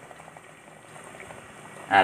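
Water at a rolling boil in a metal pot, bubbling faintly with small scattered pops, with glued PVC fittings being heated in it to soften them.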